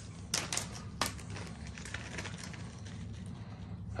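Small plastic zip-lock bags crinkling and clicking as they are handled and opened, with a few sharp crackles in the first second, then softer rustling. A low steady hum runs underneath.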